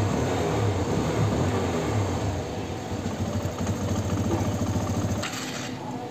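TVS Apache RTR 160 BS6's fuel-injected single-cylinder engine idling unevenly, missing and jerking with its rpm not holding steady; the mechanic suspects a dust-clogged throttle body. The low engine rumble drops away about five seconds in.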